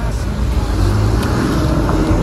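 A car running close by on the street, a steady low engine rumble under general traffic noise.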